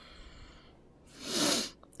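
A woman's single short, breathy vocal outburst about a second in, swelling and fading over half a second, like a sneeze or an exasperated huff.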